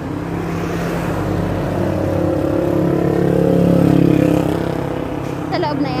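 A motor vehicle engine running with a steady low hum that grows louder to a peak about four seconds in, then fades.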